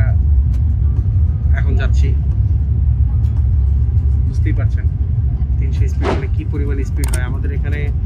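Steady low rumble inside the cabin of a Haramain high-speed train running at speed, with a few brief bursts of voices in the second half.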